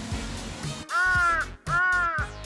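A crow-caw comedy sound effect: two identical arched caws, each about half a second long, starting about a second in. It is the stock cawing-crow gag marking a foolish, awkward moment.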